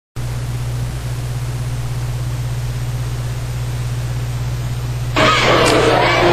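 Steady low electrical hum with a hiss of noise and no other sound, typical of a video capture with no programme signal. About five seconds in it gives way to louder crowd noise and voices in a gymnasium.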